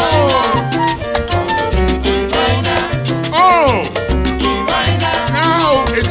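Salsa-style Latin band music: a repeating bass line under busy percussion, with swooping falling melody notes twice in the second half.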